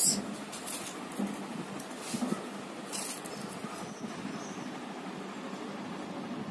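Faint rustling and a few light crinkles from potato chips being handled and pressed onto a hot dog's filling, over a steady background hiss.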